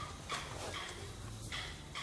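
A few faint, light knocks as a fabric-covered speaker grille frame is handled on a wooden speaker cabinet, over a low steady hum.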